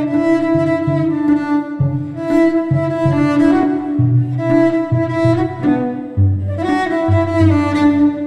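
Layered cello playing built up on a loop station: a bowed cello melody over looped cello parts, with a rhythmic low bass line of short repeated notes beneath sustained higher notes.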